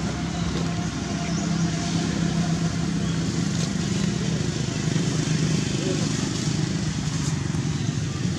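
A steady low engine-like drone, as from a vehicle idling or running nearby, with faint indistinct voices behind it.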